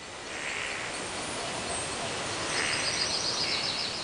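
Forest ambience: a steady hiss of natural background sound with birds calling, ending in a fast trill of repeated high notes over the last second and a half.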